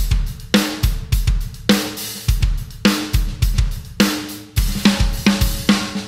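Drum kit playing a steady groove around a vintage Sonor Phonic Plus D518 14x8" chrome-over-beech snare drum, with bass drum and cymbals. The snare hits leave a sustained pitched ring.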